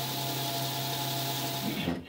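A drill press running with a twist bit cutting into an aluminium plate: a steady low hum with a hiss over it, stopping suddenly a little before the end.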